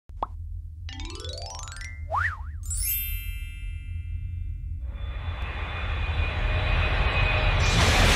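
Cartoon sound effects over a steady low music bed. A short pop comes first, then a rising sweep, a quick up-and-down wobbling boing and a high sparkling shimmer. From about five seconds in a rocket-style whoosh builds to a loud rush at the end.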